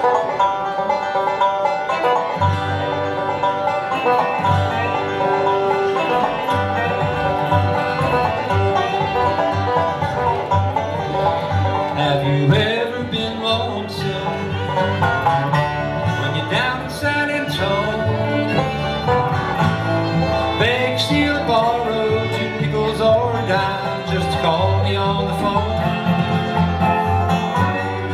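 Live bluegrass band playing an instrumental introduction on dobro, banjo, fiddle, acoustic guitar and upright bass, with a low bass line coming in about two seconds in.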